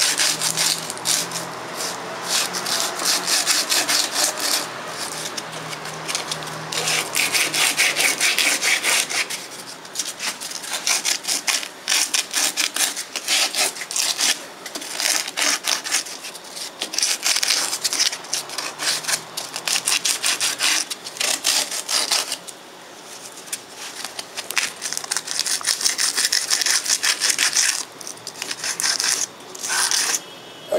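Sandpaper on a hand-held sanding block rasping against a wooden bowl blank spinning on a wood lathe, in long passes with short lulls between them, over a faint lathe motor hum. The sanding is taking off torn, fuzzy wood fibres left on the turned surface.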